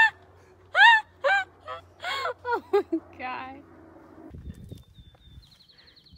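A woman laughing hard in a run of short, very high-pitched bursts that die away after about three and a half seconds.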